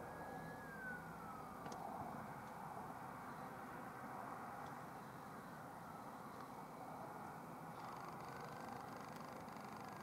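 Faint, steady drone of a twin-turbine Eurocopter EC135 helicopter in flight, with a falling whine in the first two seconds.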